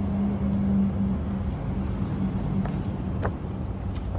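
A steady low mechanical hum with a held tone that eases off after about three seconds. A couple of light clicks come near the end as the framed embroidery is handled.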